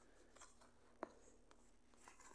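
Very faint stylus strokes on a tablet screen while drawing, with one sharp tap about a second in.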